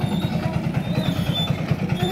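Small engine of a barrel-train tractor running with a steady, fast low throb.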